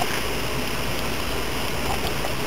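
Diet Coke poured from a plastic bottle into a car's fuel filler neck: a steady rush of liquid over a low, even rumble.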